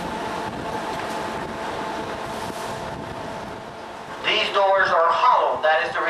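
Steady machinery hum with several steady tones, then a man speaking from about four seconds in.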